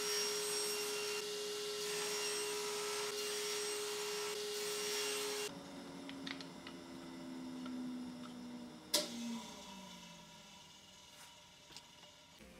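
Table saw with a single blade running steadily, then switched off about five and a half seconds in, its pitch sliding down as the blade spins down. A sharp knock comes about nine seconds in.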